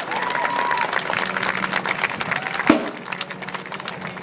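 Audience applauding and cheering, with a held whoop near the start; the clapping thins out after about three seconds. A single sharp knock cuts through about two-thirds of the way in.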